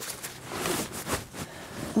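Faint rustling and a few light clicks of horse tack, saddle and stirrup leathers, being handled and adjusted.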